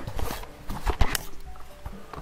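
Background music with a steady tune, overlaid by handling noise as a hand-held camera is swung down to the floor: rustles and several knocks, the loudest a sharp knock about a second in.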